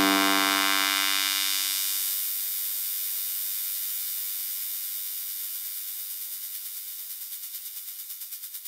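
Electronic music: a held synthesizer tone, a steady stack of pitches, left ringing as the full track drops away and slowly fading out. A quick pulsing wobble comes in near the end.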